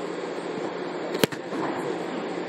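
A football kickoff: the kicker's foot strikes the ball off the tee with one sharp smack about a second in, over a steady background hum.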